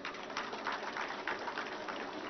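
Audience applauding faintly, a dense patter of many scattered hand claps.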